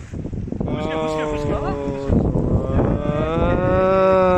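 Two long, low-pitched calls, each held at a nearly steady pitch; the second is longer, rising slightly and then falling away.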